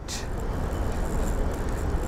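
Steady wind rumbling on the microphone, an even outdoor noise with no distinct clicks or knocks.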